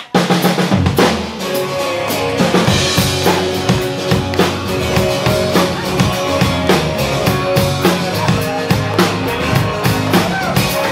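A live rock band comes in all at once: drum kit with kick, snare and cymbals keeping a steady beat under electric bass and guitars, an instrumental stretch with no vocals.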